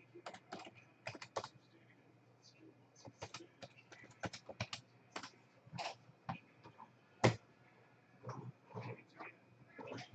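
Computer keyboard typing: irregular, fairly faint key clicks in quick runs, with one sharper, louder click about seven seconds in.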